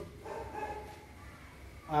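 A faint, brief animal call about half a second in, over low room noise.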